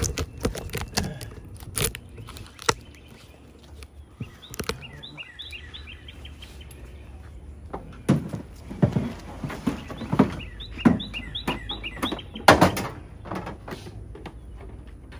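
Knocks and clunks of tools and gear being shifted and lifted out of a pickup truck's bed, sparse at first and heavier in the second half. A small bird chirps in quick repeated notes in the background, in two spells.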